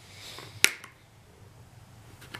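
A sharp click about two-thirds of a second in, then a fainter one, as night-vision goggles mounted on an airsoft helmet are handled.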